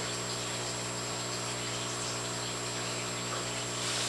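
A steady low hum at one constant pitch with a stack of overtones, a faint hiss and a thin high whine above it.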